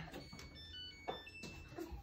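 Clothes dryer's electronic control panel beeping as a cycle is selected: a string of short, high beeps at changing pitches, the last one held a little longer.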